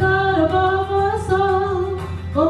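A woman singing a slow worship song, holding long notes, over a steady instrumental accompaniment.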